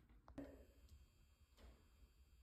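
Near silence: faint room tone, with a faint click about half a second in.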